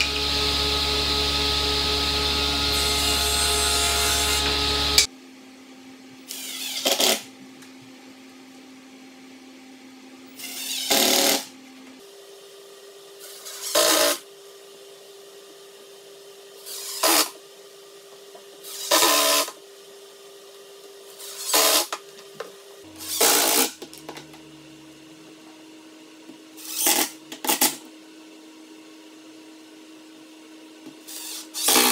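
A table saw running as it makes crosscuts in plywood, loud and steady for about five seconds, then stopping suddenly. After that a cordless drill drives screws in short bursts, about ten of them, each a second or less, fastening casters to a plywood base.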